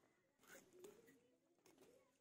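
Near silence, with a bird cooing faintly in the background in a few soft, wavering calls.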